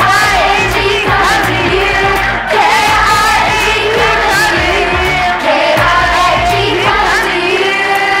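Children's choir singing a song over instrumental accompaniment with a steady bass line.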